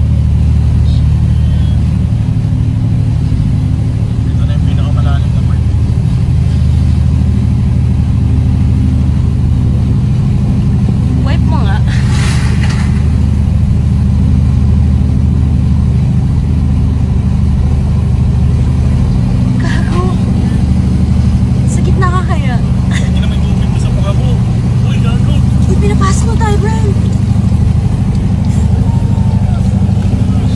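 Toyota Land Cruiser engine running steadily as the vehicle drives through deep floodwater, heard from inside the cabin. A brief rush of noise about twelve seconds in.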